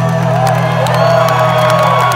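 The closing bars of a live solo acoustic guitar song, the last chord sustained, with a large crowd cheering and whooping over it.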